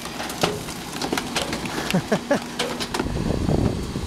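An old couch's wooden frame cracking and splintering as a rear-loading garbage truck's compactor crushes it, with many scattered sharp snaps. The truck's low rumble grows near the end.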